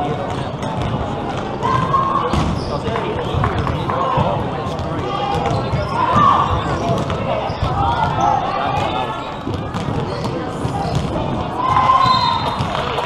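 Indoor volleyball rally: the ball is struck again and again in sharp knocks, mixed with players calling out and voices around the court.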